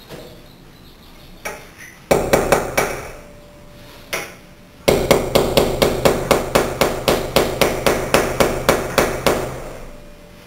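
Hammer driving a chisel, chipping out mortar around a glass block in a glass-block wall. A few light taps, then a quick run of blows about two seconds in, then a steady series of about four to five blows a second through the second half, stopping shortly before the end.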